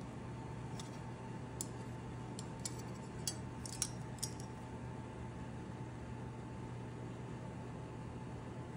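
A handful of light, sharp clinks and clicks of kitchen items being handled, bunched in the first half, over a steady low hum.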